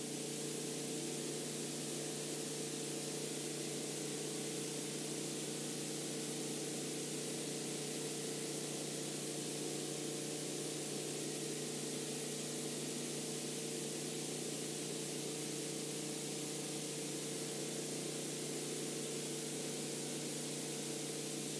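Steady hiss with a low, even hum underneath: recording noise with no programme sound.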